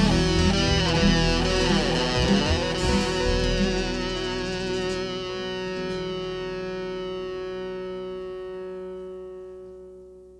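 Closing bars of a band's song with electric guitar through effects: a few seconds of busy, bending guitar lines, then a held final chord that rings out and slowly fades away.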